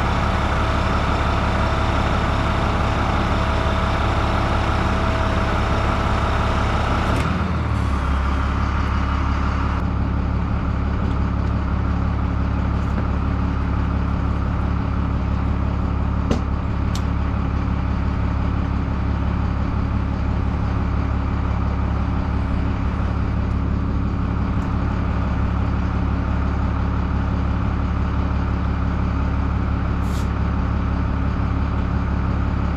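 A heavy diesel engine idling steadily, a constant low drone. The tone changes a little about seven seconds in, and there are a couple of faint clicks around sixteen seconds.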